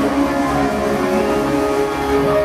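Live rock band: several electric guitars playing together over bass and drums, with long held notes that bend in pitch.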